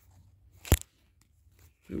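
A single sharp click as the cardboard toy box is handled and turned.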